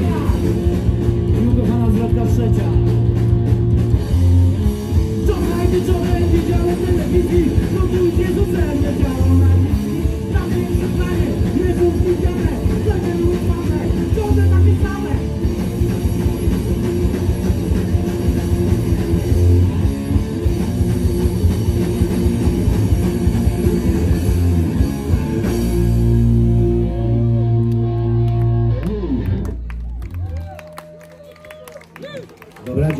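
Punk rock band playing live through a PA, with distorted electric guitars and drums. The song closes on a long held chord in the last few seconds.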